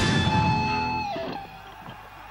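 Electric guitar chord strummed and left to ring with the band, fading out about a second and a half in.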